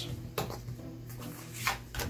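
Tarot cards being slid and gathered by hand on a tabletop: a couple of brief soft taps and slides over a low steady hum.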